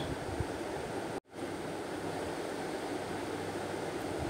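Steady background hiss of room tone, with a brief total dropout to silence about a second in.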